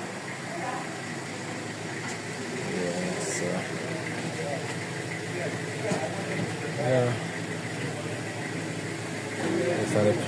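An engine idling with a steady hum, with people talking in the background a few times.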